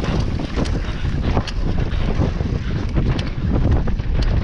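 Mountain bike riding fast down a dirt trail: wind rushing over the on-bike camera's microphone and a steady low rumble of tyres on dirt, with frequent sharp clicks and rattles from the bike over bumps.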